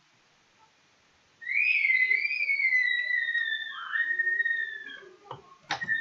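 A long, clear whistle-like tone that starts about a second and a half in, holds and then slowly falls in pitch over about three and a half seconds, with a brief dip near the end.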